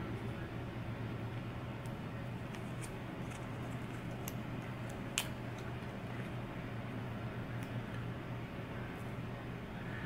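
Steady low room hum with a few faint clicks and crinkles as a wart-removal bandage is handled and peeled, the sharpest click about five seconds in.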